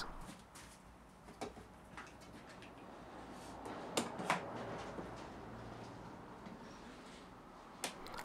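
A few faint, scattered clicks and knocks of a metal bar clamp being slid and set against an MDF cabinet, the two sharpest about four seconds in, over a low steady hum.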